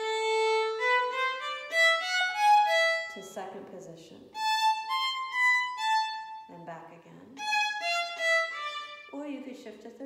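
Solo violin playing a short scale passage in three bowed phrases, the first climbing note by note. The passage is played with a shift of the left hand up a position rather than an extended fourth finger. A few brief spoken words fall between the phrases.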